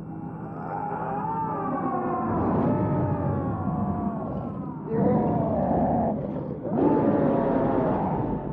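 A werewolf's transformation cries from a TV show's soundtrack: a long scream that slides down in pitch, then two loud roars starting about five and seven seconds in.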